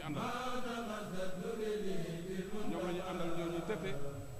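A man chanting Islamic devotional verses, holding long, wavering notes one after another.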